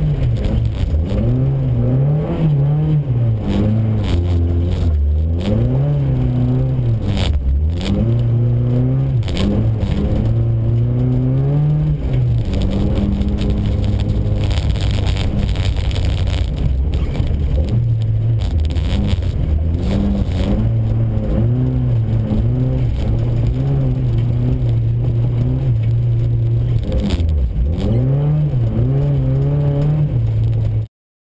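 VW Golf GTI rally car's engine heard from inside the cabin, revving up and dropping back again and again through gear changes under hard acceleration. Scattered knocks and clatter come through over the engine.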